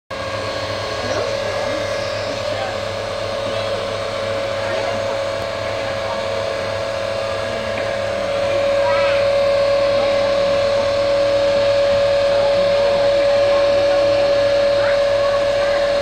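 Steady whine of a glass-bottom tour boat's motor, getting louder about halfway through, under faint passenger chatter.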